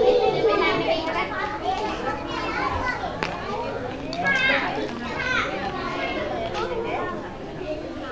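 Many young children's voices chattering and calling out over one another, mixed with adult talk, with a few high-pitched shouts around the middle.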